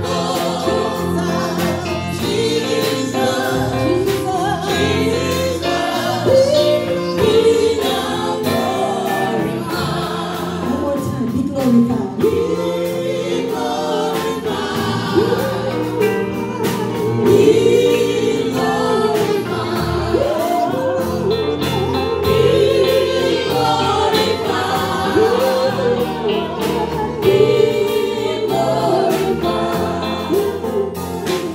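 A small gospel vocal group of men and women singing in harmony into microphones, with electronic keyboard accompaniment holding sustained chords underneath.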